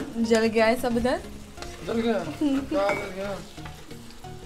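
A tomato and chili masala sizzling in a nonstick frying pan while a metal spoon stirs it. A voice calls out over it twice, drawn out and louder than the frying.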